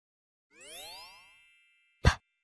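Cartoon sound effect: a rising whistle-like glide about half a second in that settles into a ringing chime and fades away, the kind of pop-in sound that marks a letter appearing on screen.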